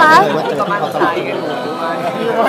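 Speech only: a woman's voice with other voices chattering around her in a press scrum.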